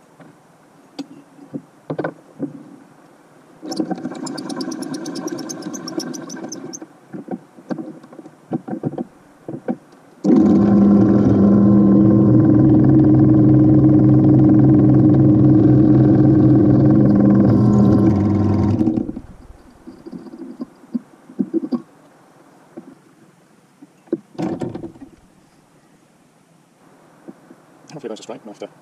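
Bench drill press motor running steadily while drilling through a 6 mm thick solid copper bar. The loudest run starts about ten seconds in and lasts about eight seconds before stopping, after a shorter, quieter run a few seconds in. Clicks and knocks of handling the bar and vise come between the runs.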